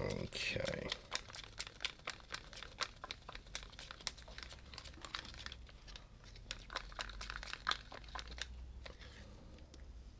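Irregular crinkling and small sharp clicks of handling noise, busy for most of the stretch and thinning out near the end, from paint containers being picked over between pours.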